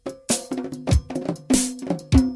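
Instrumental passage of a band-played Sinhala pop song, without singing: a drum kit with a steady beat of kick drum and cymbal hits under a quick pattern of sharp, ringing percussion strikes.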